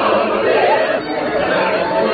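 Opera chorus and soloists on stage, many voices at once in a dense, crowded jumble rather than one clear sung line.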